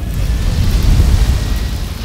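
A loud, deep rumble that swells to a peak about a second in, then eases off slightly.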